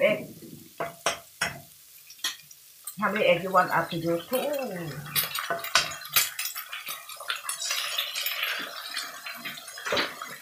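Eggs cracked into a wok of hot oil with shrimp and chili: a few sharp taps in the first couple of seconds, then from about halfway through a steady frying sizzle as the eggs hit the oil, with more sharp clicks over it.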